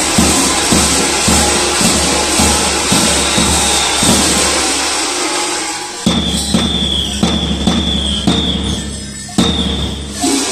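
Kukeri bells clanging and jangling as the costumed dancers move, over the steady beat of a large tapan drum. The drum drops away for a moment around five seconds in and comes back sharply at about six seconds, with a thin high note sounding in stretches after it.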